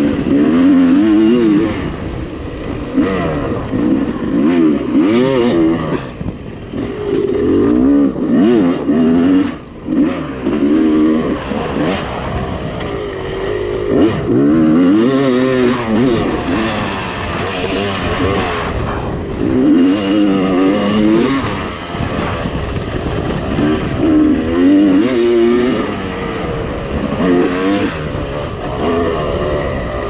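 Yamaha YZ250 two-stroke dirt bike engine under way, its pitch climbing and falling again and again as the throttle is opened and closed. The engine note drops off briefly about six and ten seconds in.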